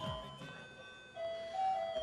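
Quiet background film score: a simple melody of a few long, steady held notes.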